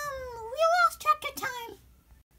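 A child speaking in a high, squeaky character voice with sliding pitch, the words unclear, stopping shortly before the end.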